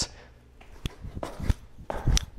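Feet striking artificial gym turf as a person starts single-leg bounding: a few short thuds, about every half second, after a quiet start, with the loudest one near the end.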